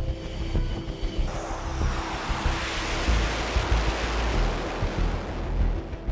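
Fighter jet engine noise swelling into a loud rushing sound a little over a second in, strongest in the middle and easing toward the end, as the jet comes in low over the carrier deck.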